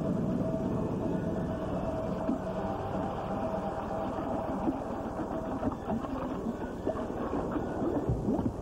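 Steel roller coaster train rumbling and clattering along its track, with a thin steady whine over the first few seconds.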